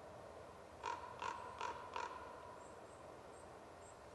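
A crow cawing four times in quick, even succession, about 0.4 s apart, around the first two seconds.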